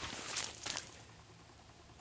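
Faint, brief rustling in the first second, then a quiet outdoor lull.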